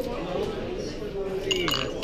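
Glass clinking: a short cluster of clinks with a brief ringing tone near the end, over background voices.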